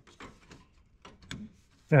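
Faint clicks and light knocks of a plastic aftermarket grille being pressed onto a Ford Bronco's front end, its clips snapping into place; the sharpest click comes about a second and a quarter in.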